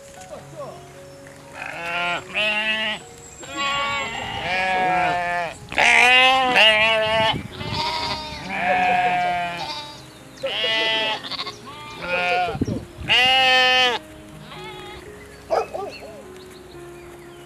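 Goats bleating repeatedly: about ten wavering calls of half a second to a second each, coming one after another, with a last short one near the end.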